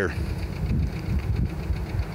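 A low, steady engine rumble, like a vehicle idling.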